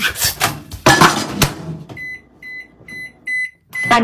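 Microwave oven keypad beeping as its buttons are pressed: a quick run of about five short, high beeps, keying in 911. Before the beeps, for about a second and a half, there is noisy clatter and rustling.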